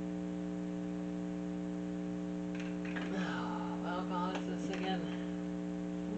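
Steady electrical mains hum in the recording, a microphone problem the makers themselves acknowledge. Faint low voices come in about three seconds in and last a couple of seconds.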